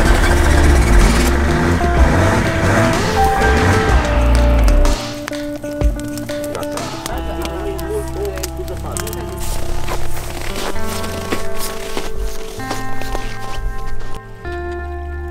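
Background music, loud and full in the low end for about the first five seconds, then lighter with sustained notes, with a brief laugh at the very start.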